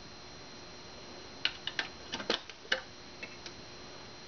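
A run of about half a dozen sharp, small metallic clicks and taps from hands working a parking meter's coin vault door and housing, starting about a second and a half in, with a couple of fainter ticks after.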